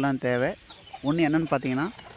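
A country hen clucking close to the microphone: one call at the start, then a run of calls from about a second in.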